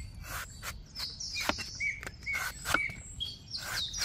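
A steel cleaver slicing into the husk of a young green coconut in several sharp, irregular strokes. Small birds chirp in short calls throughout.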